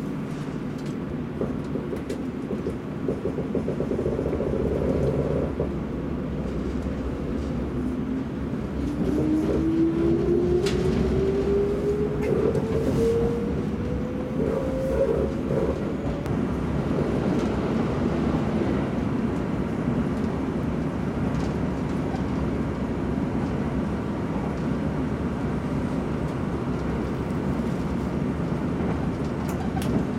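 Kintetsu electric train pulling away and speeding up: a motor whine rises steadily in pitch over about eight seconds, starting near eight seconds in. A steady rumble of the train running follows.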